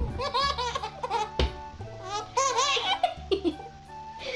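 A baby laughing hard in two bouts of quick, repeated laughs, one at the start and one about two seconds in, over background music.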